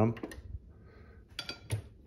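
Light clinks and knocks from the stainless-steel vacuum sealer being handled on a granite countertop, a short cluster of them about a second and a half in.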